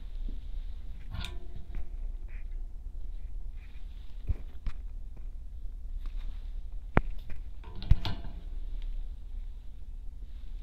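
Handling noises from small-wire soldering work: soft rustles and taps with a few sharp clicks, the two loudest about seven and eight seconds in, over a low steady hum.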